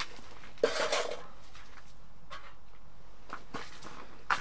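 Camp cookware being handled: one short clatter about half a second in, then a few faint clicks.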